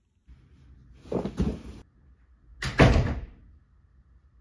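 A door banging twice: two loud, rattling bursts about a second and a half apart, each lasting under a second.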